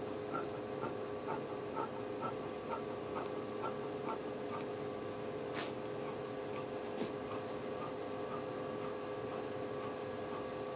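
Scissors snipping through fabric in short, even cuts, about two a second, which fade out about halfway through. Two sharper clicks follow later, over a steady faint hum.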